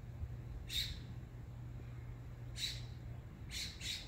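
A bird giving short calls, four in all, the last two close together near the end, over a low steady rumble that fades about three seconds in.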